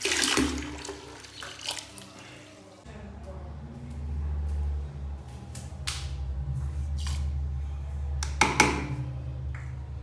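Tap water splashing into a plastic bucket, loudest at the start and dying away over the first couple of seconds. Then a low steady hum with a few sharp clicks and knocks from a plastic scoop of detergent powder, the loudest cluster near the end.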